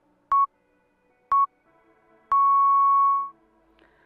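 Workout countdown timer beeping: two short electronic beeps about a second apart, then one long beep lasting about a second as the timer reaches zero, marking the end of the timed stretch hold. Faint background music runs underneath.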